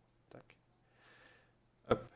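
Computer mouse buttons clicking: several light, separate clicks, with a sharper one near the end.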